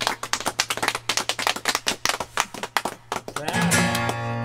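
Mongolian folk band playing live: fast, rhythmic strikes on strings from a yoochin (hammered dulcimer) and acoustic guitar over a steady low drone. Long held tones with a slight waver come in near the end.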